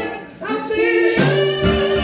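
Live band with several singers: the music drops out for a moment, then the voices come back in on held harmony notes, with low keyboard or bass notes joining about a second in.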